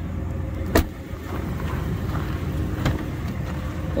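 Pickup truck engine idling, a steady low rumble, with a sharp click about a second in.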